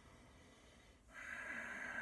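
Ujjayi breath: a slow breath drawn through the nose with the throat narrowed, starting about a second in as a steady hiss from the back of the throat.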